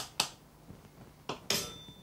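A wooden spoon knocking against a ceramic bowl of soaked dog biscuits: a few sharp clicks, the last and loudest about one and a half seconds in with a brief ring.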